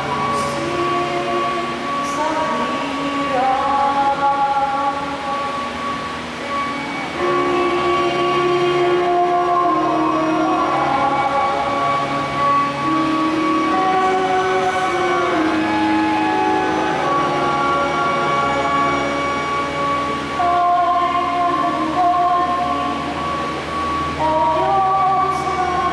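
A woman's voice singing a slow melody of held notes into a microphone, amplified through a church sound system, over a steady sustained accompanying tone.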